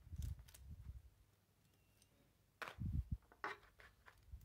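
Plastic parts of a disassembled Astra H power-folding mirror being handled on a tabletop: a few soft knocks and clicks just after the start, then a short cluster of sharper clicks and knocks between about two and a half and three and a half seconds in.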